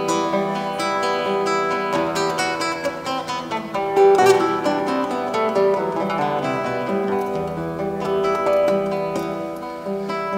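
Two classical guitars playing an instrumental introduction to a song, picked notes and chords ringing together.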